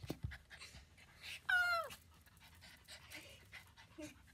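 Small dog panting close to the microphone while being hugged, with a short high whine that drops in pitch at its end about a second and a half in.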